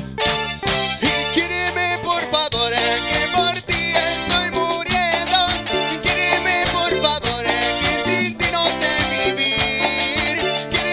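A Latin band playing upbeat dance music with electric guitars, keyboard and drums, and a male lead vocalist singing over it.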